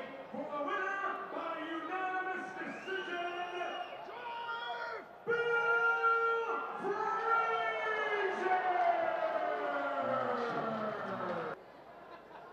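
A ring announcer's voice over the arena's public-address system, reading out the judges' decision and drawing out the final words in long falling calls. It cuts off suddenly near the end.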